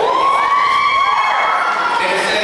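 Spectators with high, child-like voices yelling a long, drawn-out shout that rises at the start and holds for about a second and a half, with other voices overlapping it.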